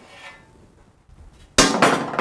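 Metal oven baking tray set down on the worktop with one sharp clang about a second and a half in.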